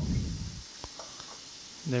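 Quiet steady hiss with one faint soft knock a little under a second in: a ball of pizza dough being set into a stainless steel bowl on a dial kitchen scale.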